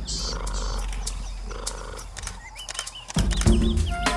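A leopard growling twice, each growl under a second long and about a second and a half apart. About three seconds in, music comes in with a loud hit.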